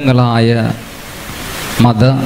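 Speech: a man talking into a microphone, with a pause of steady hiss about a second in before he resumes.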